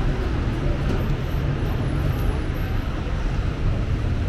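Steady low rumble of street traffic with faint voices mixed in.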